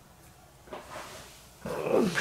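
A man's low groan of strain as he leans forward, starting about one and a half seconds in. It fits a sore, recently twisted back.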